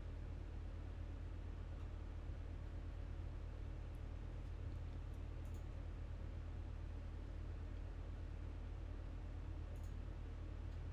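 Steady low electrical hum and hiss of a desktop microphone, with a few faint computer mouse clicks.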